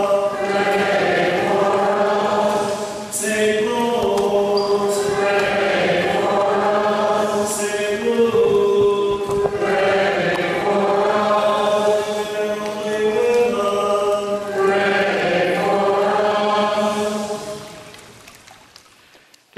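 Choir and congregation chanting a sung litany, slow phrases of a few seconds each with long held notes; the singing dies away near the end.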